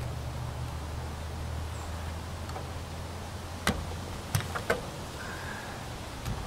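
A few sharp clicks and knocks of guns being handled on a shooting bench, one rifle set down and a carbine picked up, a little past halfway, over a steady low hum.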